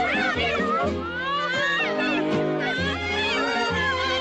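Orchestral cartoon score: swooping, sliding high lines over held low bass notes that change every half second or so.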